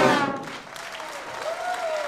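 The wind band and choir's final chord dies away in the hall's reverberation, and audience applause follows.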